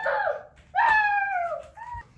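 A child imitating an elephant's trumpeting with his voice: high cries that fall in pitch, the longest starting about a second in.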